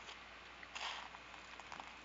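Quiet room tone with faint microphone hiss, and a soft breath a little under a second in.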